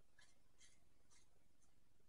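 Near silence, with about five faint, short crunches roughly half a second apart: a spicy tortilla chip being bitten and chewed.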